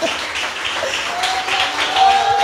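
A congregation applauding, with a voice calling out over the clapping.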